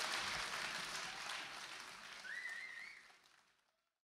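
Audience applause fading out, with a brief wavering whistle from the crowd about two and a half seconds in; the sound is gone by about three and a half seconds.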